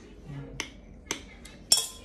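A spoon knocking and clinking against the pan, about four sharp clicks, the last the loudest with a brief ring.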